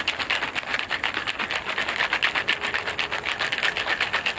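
Plastic shaker bottle of pink drink being shaken hard to mix it, the liquid sloshing and knocking inside in a fast, even rhythm.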